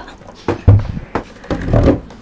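Dull thumps and knocks of an old low table being handled as it is opened, loudest just under a second in, with a longer stretch of knocking and rubbing near the end.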